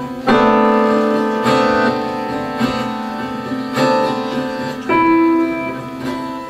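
Slow keyboard chords struck about once a second, each left to ring on before the next.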